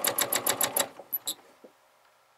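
Sewing machine free-motion quilting, the needle stitching at an even pace of about twelve stitches a second, then stopping a little under a second in. A couple of faint clicks follow.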